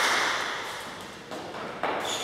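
Sound in a large hall dying away just after a table tennis rally ends, followed by two soft thuds near the end.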